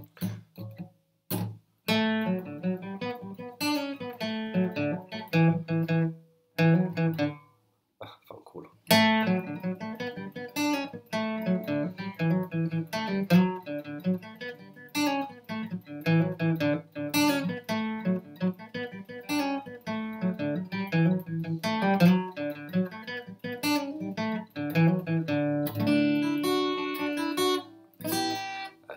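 Acoustic guitar playing a quick picked melody in D major, in the manner of an Irish jig, with a short break about a quarter of the way in before the playing runs on.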